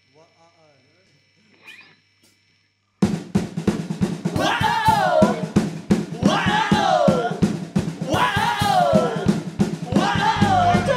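Near silence, then about three seconds in a rock band starts abruptly with fast, dense drumming on a kit with snare, and a pitched sound sliding downward about every two seconds.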